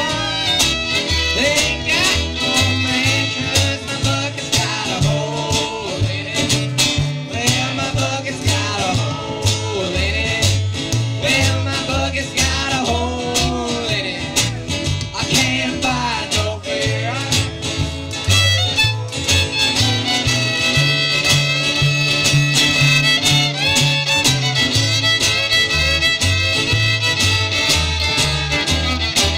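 Live acoustic string band playing an instrumental passage: a fiddle leading over a strummed acoustic guitar, with a pulsing bass line underneath.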